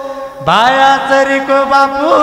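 A man's voice chanting a Banjara devotional bhajan: a long held note ends, and about half a second in he swoops up into a new note and holds it steadily, with instrumental accompaniment underneath.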